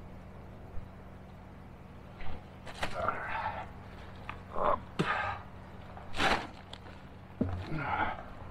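A metal setting pipe knocking and scraping a few times against the inside of a steel well casing as the pitless adapter is worked into its seat. A steady low hum runs underneath.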